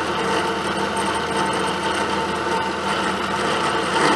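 Milling machine running a carbide end mill through a pocket in a metal block at final depth: a steady, even cutting noise with a faint steady hum underneath.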